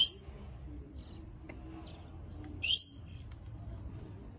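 Two short, sharp, high-pitched bird chirps, one at the start and one about two and a half seconds later, over a faint low background rumble.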